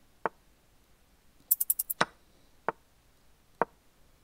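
Chess.com move sounds as pieces are played in a fast bullet game: short wooden clacks, four of them spaced unevenly. About one and a half seconds in comes a quick run of five sharper, brighter clicks.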